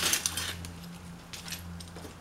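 Clicking and rattling of a long-handled pole pruner working among palm fronds and seed stalks to cut a seed cluster. There is a quick run of sharp clicks at the start and a few more about a second and a half in, over a steady low hum.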